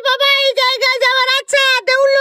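A very high-pitched, cartoon-style voice talking fast in short syllables at an almost level pitch, giving it a sing-song, chanting sound.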